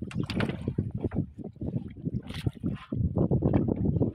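Bamboo fish trap and basket handled over the side of a wooden boat: a rapid, irregular run of knocks and clatters against the hull, with a brief splash of water about two seconds in.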